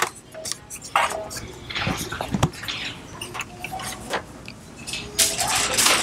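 Glass candle jars with wooden lids being handled and lifted off a store shelf: a scatter of light knocks and clicks. Faint background music plays.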